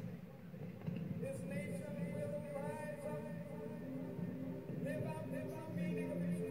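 Background music with a voice over it, coming from a broadcast played through a screen's speaker. From about four seconds in, the music settles into a regular repeating pattern of notes.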